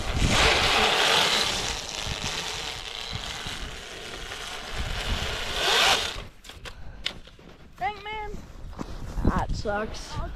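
Snow crunching under boots and clothing rustling close to the microphone as someone walks through snow. It stops sharply about six seconds in, leaving quieter sounds with a short voiced hum.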